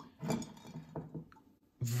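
A quiet pause: a short murmured vocal sound near the start, faint handling of a plastic cup holding a corked glass vial, and one faint tick a little past the middle.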